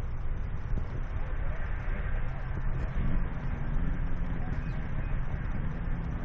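Several racing snowmobiles idling together on the start line, a steady low engine noise from the whole grid.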